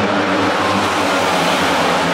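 Single-cylinder flat-track race motorcycles at full throttle as the pack passes, a loud, steady engine noise.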